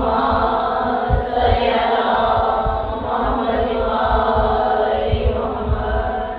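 Background chant of voices on long held notes, with scattered low thumps underneath.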